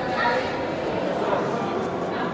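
Indistinct chatter of several people's voices, with a brief higher-pitched voice rising just after the start.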